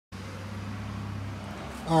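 A steady low mechanical hum with a few held low tones, and a man starts speaking just before the end.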